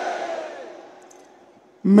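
The echo of a man's voice through a public-address system dies away over about a second, leaving a faint hiss that falls almost silent. Just before the end the same man starts speaking into the microphone again.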